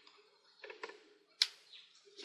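A single sharp click about one and a half seconds in, after a few faint soft handling sounds.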